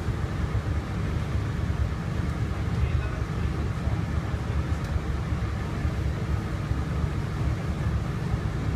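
A tour boat's engine running steadily with a low rumble, over the rush of the wake churning the lake water.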